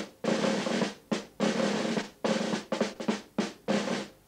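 A drum played in short rolls and quick groups of strokes, each breaking off sharply before the next, with the shorter groups coming in the second half.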